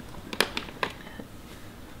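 Thin clear plastic humidity dome crackling and clicking under a hand pressing on it, with two sharp clicks about half a second apart, while a fleece blanket is drawn over it.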